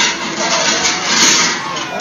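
Crowd noise: many voices talking and calling out at once, loud and indistinct.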